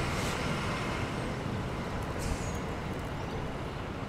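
Steady low rumble and road noise of a car heard from inside its cabin, slowly fading, with a couple of brief hisses.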